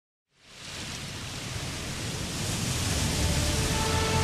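Ocean surf washing onto a beach, a steady rush that fades in from silence and grows louder. Music starts to come in near the end.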